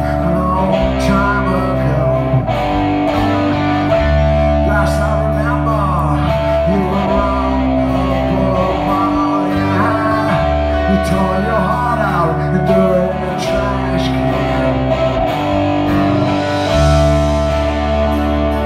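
Punk rock band playing live, with electric guitars, bass and drums over a steady chord progression that changes every couple of seconds. A man sings the lead vocal into a microphone.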